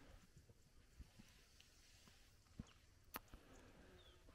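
Near silence, broken by a few faint, soft thumps spaced irregularly and one small click about three seconds in.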